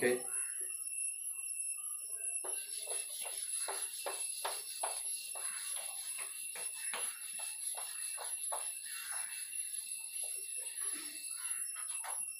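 A cloth duster wiping chalk off a chalkboard in many quick back-and-forth strokes, starting a couple of seconds in and stopping shortly before the end.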